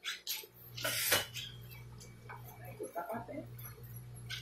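Paper pattern sheets being handled on a worktable: a few short sharp clicks and rustles in the first second, then quieter handling over a steady low electrical hum.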